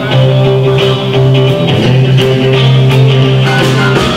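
A live band playing loud, electric guitar to the fore over bass guitar, drums and keyboard, with low sustained notes and cymbal hits.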